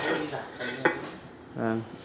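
A single sharp clink of hard ceramic, a small glazed bonsai pot knocking against its ceramic stand as it is handled, about a second in.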